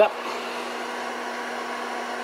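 Induction cooktop running under about a kilowatt of load, its cooling fan giving a steady whir with a constant low hum.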